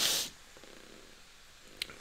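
A short breath close to the microphone, a brief hiss, then quiet room tone with a faint click near the end.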